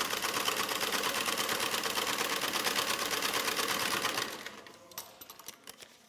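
Antique Singer sewing machine running fast with an even clatter as its needle punches a row of holes through a sheet of paper, perforating it for tear-off tickets. The run slows and stops about four seconds in, followed by a few faint clicks.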